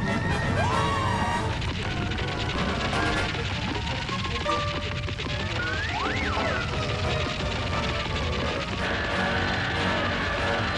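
Cartoon background music with slapstick sound effects: a long stretch of dense scrabbling noise as dirt is dug out, and sliding pitch sounds, one rising near the start and a quick rise and fall about six seconds in.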